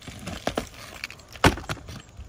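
Utility knife cutting through asphalt roof shingles and the cut pieces being pulled loose: scattered scrapes and crackles, with one loud crack about one and a half seconds in.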